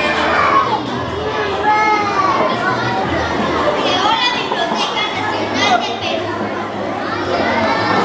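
Many children's voices talking and calling over one another, a steady hubbub of overlapping chatter with no single clear speaker.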